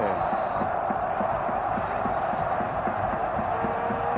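Steady noise of a large football stadium crowd as a free kick is set up, a constant din with no single event standing out.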